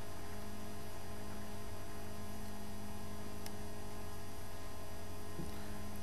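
Steady electrical mains hum with background hiss on the recording, and a faint click about three and a half seconds in.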